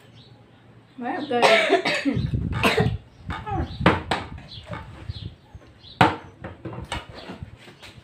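A girl coughing and making voice sounds, then sharp knocks of a plastic water bottle being flipped and landing on a table, the clearest about halfway through and again near three-quarters of the way in.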